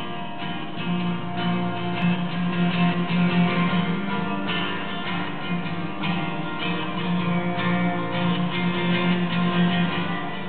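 Acoustic guitar playing the instrumental introduction to a song.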